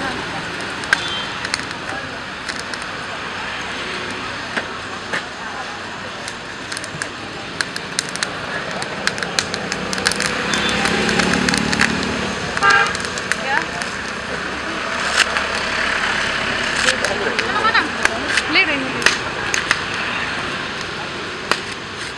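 Outdoor street ambience: a steady hum of passing traffic with the occasional toot of a horn, people's voices in the background, and scattered small clicks and knocks.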